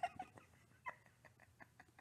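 A woman laughing quietly: a brief voiced laugh fading into a string of faint, breathy pulses, about five a second.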